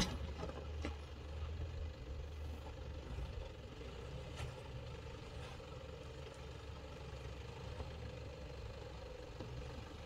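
Engine of a Toyota Hilux pickup running steadily at low revs as it crawls down a steep rocky track, with a few faint clicks. A sharp knock comes right at the start.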